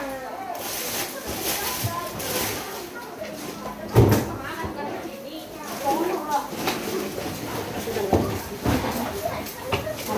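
Background chatter of voices, with rustling of goods being handled and one sharp, loud knock about four seconds in.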